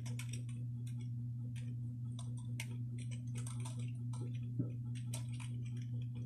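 A steady low hum with irregular light clicks and ticks scattered through it, unevenly spaced. About two thirds of the way in there is one slightly louder thump.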